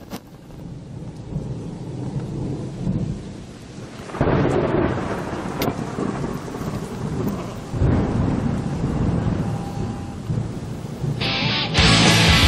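Thunder rumbling over rain, with two sudden, louder rolls about four and eight seconds in that each die away over a few seconds.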